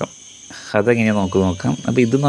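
A person's voice speaking, starting less than a second in after a brief lull, over a faint steady high-pitched tone in the background.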